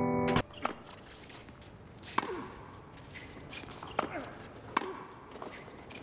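A held orchestral music chord stops abruptly just after the start. Tennis play follows: several sharp ball strikes a second or two apart and short falling squeaks from sneakers on a hard court.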